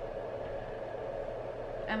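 A steady low hum that does not change, with a woman's voice starting to speak at the very end.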